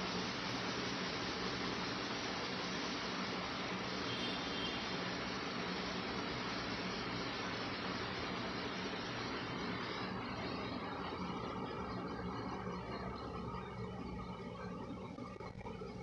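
Steady background hiss with no distinct events, growing somewhat quieter over the last few seconds.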